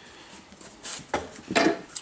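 Hand working a rubber inner tube into a motorcycle tire, a few short rubbing scuffs of skin and rubber, the loudest near the end.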